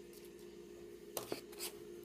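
Faint handling of a comic book in a plastic bag: two quick crackles close together a little past halfway, then a softer rustle, over a steady low hum.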